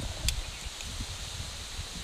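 Steel spoon stirring flour into oil in a small steel bowl, with a sharp clink of the spoon against the bowl shortly after the start. A low rumble runs underneath.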